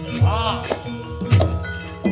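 Javanese gamelan music played through a line-array PA with subwoofers: steady ringing metallic tones, two heavy low drum strokes about a second apart, and several sharp knocks. A short vocal cry bends up and down early on.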